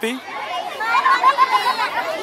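Background chatter of many children's voices, high-pitched and indistinct, with no one speaking close by.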